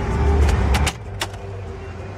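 Glove box latch clicking and the lid dropping open in a 2004 Cadillac Escalade: a few sharp clicks between about half a second and a second and a quarter in. Under them is the steady low hum of the V8 idling, after a louder low rumble in the first second.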